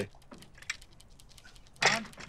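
Faint, scattered light clinks and clicks of glass tea glasses and dishes on a serving tray as it is set down on a table, with a short louder burst near the end.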